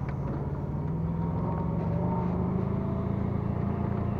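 A motor running steadily: a low hum with a faint whine that rises slightly in pitch about a second in.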